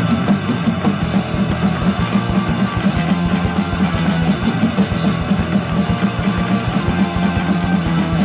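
Hardcore punk / powerviolence band crashing in abruptly: heavily distorted guitars and bass over very fast, driving drumming, loud and dense.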